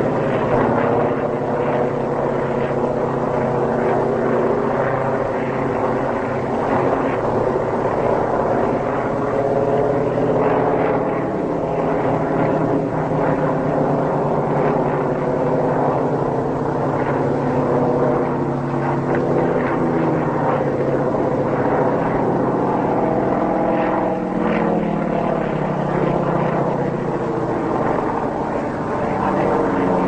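Propeller-driven aircraft engines droning continuously in flight, their pitch wavering and sliding as the planes manoeuvre.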